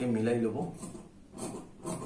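Tailor's scissors cutting through cloth, a rhythmic crunching snip about twice a second in the second half.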